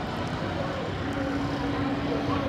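Steady background noise of city traffic, with a faint steady hum that comes in about a second in.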